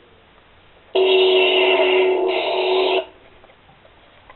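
A toy blaster's built-in speaker plays an electronic sound effect: a steady tone of several fixed pitches that switches on about a second in, shifts slightly midway, and cuts off abruptly after about two seconds.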